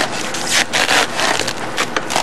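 Irregular scraping and rustling of a gloved hand and racks rubbing against the frost-covered shelves of a laboratory freezer. The strongest scrapes come about halfway through.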